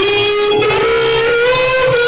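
A girl singing into a microphone over a guitar-led backing track, holding one long note and then a slightly higher one about a third of the way in.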